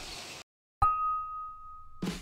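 A single bell-like ding: one clear tone strikes about a second in and rings on, slowly fading.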